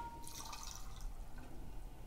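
Faint splash and drip of water as a running refrigeration motor is lowered into a glass bowl of water, about half a second in. A ring from the glass bowl, struck just before, fades out in the first second.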